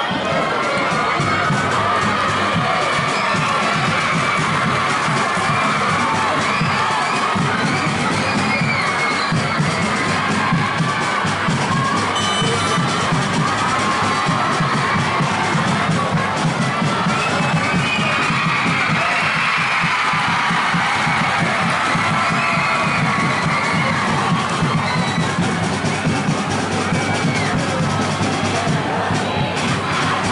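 A crowd of young school supporters cheering and shouting without a break, many voices at once.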